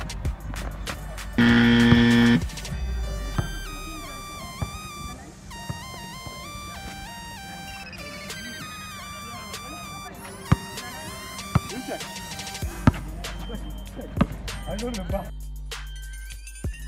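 Background music with a stepping electronic melody and a beat, opened by a loud, held electronic tone lasting about a second, about a second and a half in.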